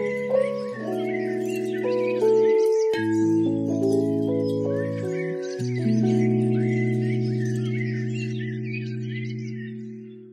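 Background music of slow, held chords that change every few seconds, with birds chirping over them. It fades out near the end.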